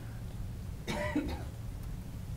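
A single short cough about a second in, over a steady low hum in the meeting room.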